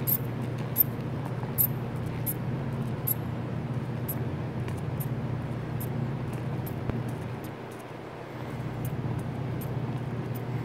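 Rubber hand bulb being squeezed again and again to pressurize a Zahm & Nagel CO2 tester, giving short clicks about once a second, over a steady low machine hum.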